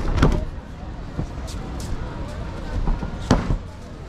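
Two thuds of judoka landing forward breakfalls on foam tatami mats, about three seconds apart.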